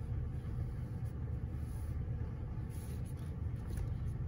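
Steady low background rumble with a few faint light taps, as of paper and a glue bottle being handled.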